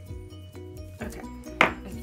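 Soft background music with steady held notes; about one and a half seconds in, a single sharp tap from the crafting work on the desk.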